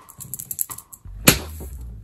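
Handling noise on the microphone: a quick run of light clicks and rustling, then a sharp knock about a second in, followed by a low steady hum.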